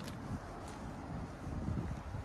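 Wind buffeting the microphone: an uneven low rumble over faint outdoor background noise.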